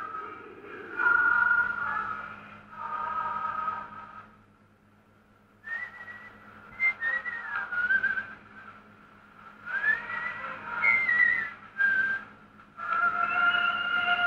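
A whistled melody in short phrases with pauses between them, and a near-silent gap about four to five seconds in.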